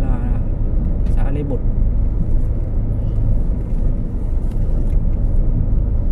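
Steady low rumble of a car driving along a road, its engine and tyre noise heard from inside the cabin.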